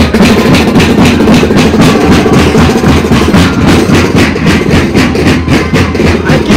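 Andean moseñada band playing: moseño flutes carry a sustained melody over a steady, dense beat of bass drums and snare drums.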